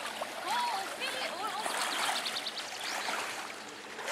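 Shallow, muddy lake water sloshing and trickling around a person wading and pushing a landing net through it.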